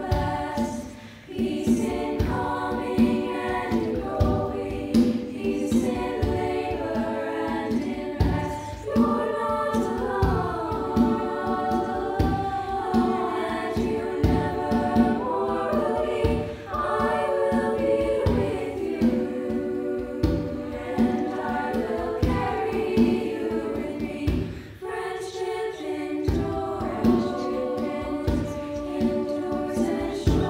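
A choir of girls' voices singing a piece together, the parts mixed from separate home recordings, over a steady low pulse. The singing dips briefly three times, near the start, about halfway through and near the end.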